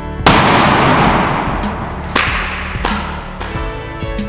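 Rubber balloon bursting as it is pressed onto the point of a drawing pin: a sharp bang about a quarter second in that trails off over about a second and a half, then a second, smaller crack around two seconds in.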